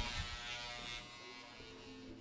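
Electric hair clippers buzzing as they cut hair, fading away after about a second.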